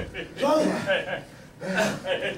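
People's voices at the mat: shouted exclamations and vocal effort, with a brief dull thud right at the start.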